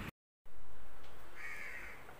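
A single bird call, about half a second long, about one and a half seconds in. Just before it, the sound cuts out completely for a moment.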